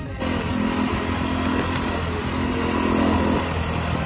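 KTM dirt bike engine running steadily while riding along a gravel road, heard from the rider's own bike, with road and wind noise, getting a little louder toward the end.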